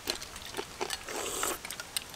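People eating a spooned dessert: short clicks of spoons against bowls, and a wet slurping noise lasting about half a second, about a second in.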